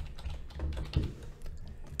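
Computer keyboard being typed on: a few light, scattered key clicks over a faint low hum.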